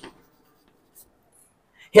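Chalk writing on a blackboard: a few faint, short chalk ticks and scratches, one about a second in. A man's voice starts right at the end.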